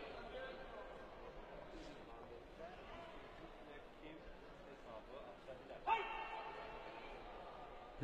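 Faint arena background of voices and shouting during a taekwondo bout, with one louder, drawn-out shout about six seconds in.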